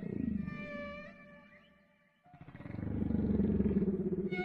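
Dark intro soundtrack: a deep, rough, pulsing low rumble with a held high tone above it. It fades away to almost nothing about two seconds in, then swells back up louder.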